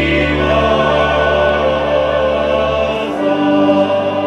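Men's folk choir singing a slow Moravian folk song with long held notes. A low held note drops out about three seconds in.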